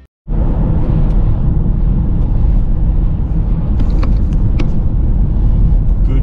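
Steady road and engine noise heard inside a VW California campervan's cab while it drives along at speed, a deep, even rumble with a few faint ticks. It cuts in abruptly a moment after the start.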